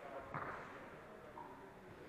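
The tail of audience applause dies away in a large, echoing hall. A single sharp knock comes about a third of a second in, then only a faint murmur of voices.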